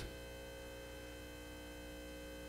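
Steady electrical mains hum with several faint, constant high tones, the background hum of the microphone and sound system.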